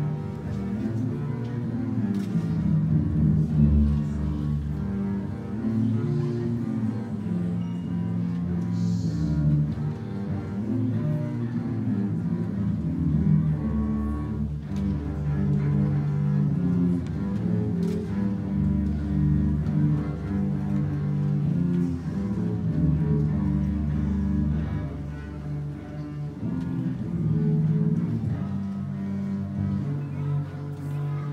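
A trio of double basses playing a bowed piece together, a low melody moving from note to note with sustained tones.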